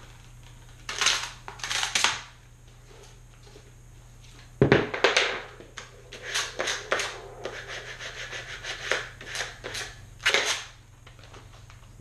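Vinyl decal sheets and transfer tape being handled and rubbed with a plastic squeegee: a string of crinkling, rustling and scraping noises, loudest with a sudden burst about five seconds in and another near ten seconds.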